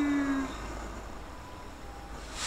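The tail of a long held chanted note in kagura, one sustained voice whose pitch sags slightly before it stops about half a second in. Then quieter hall background.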